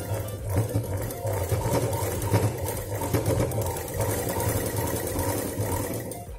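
A black domestic sewing machine stitching at a steady, fast run through fabric strips, stopping at the end.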